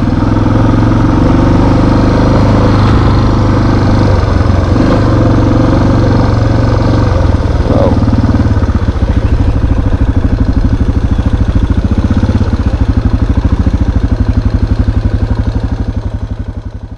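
Dirt bike engine running steadily while riding a trail. About halfway through the engine speed drops and it runs slower, its separate firing beats clearly heard.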